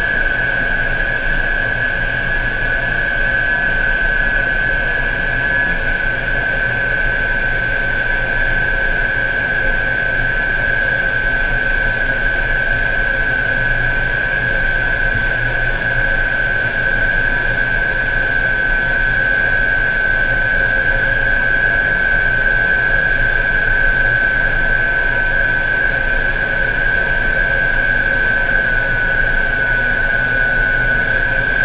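Offshore crane machinery running steadily, a constant drone under a high-pitched whine that dips slightly in pitch near the end.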